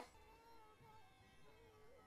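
Near silence: faint room tone between speech.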